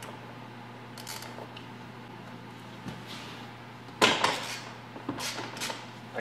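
Hand tools being handled at a truck door hinge: a few light clicks, then a louder metallic clatter about four seconds in, over a steady low hum.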